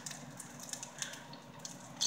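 Batter-coated dandelion flowers frying in hot oil: a faint, steady sizzle with scattered small crackles.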